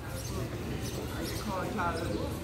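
Passers-by talking in an open paved plaza, a voice rising clearly near the end, over a steady outdoor background with brief knocks of footsteps on the stone paving.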